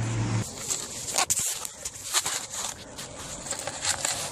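Paper rustling as it is handled, with scattered light clicks and taps.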